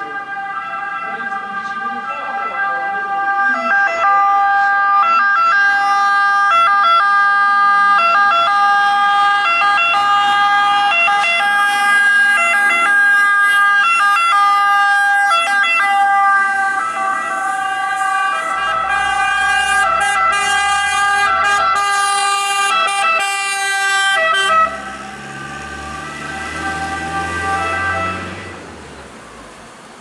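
Italian fire engine siren sounding loud and steady, with brief breaks in its tones. A truck engine's low rumble comes in as the vehicle passes close, about two-thirds of the way in. The siren cuts off suddenly near the end, and the engine sound then fades.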